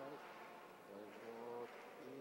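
A man's voice, faint, holding one drawn-out syllable at a steady pitch about a second in.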